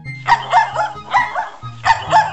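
A cartoon puppy barking several times in quick succession, with short, bright barks over children's background music.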